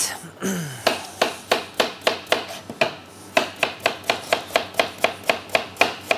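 Kitchen knife slicing a raw potato into thin slices on a plastic chopping board. Each cut ends in a crisp tap of the blade on the board, about three to four taps a second, with a short pause near the middle.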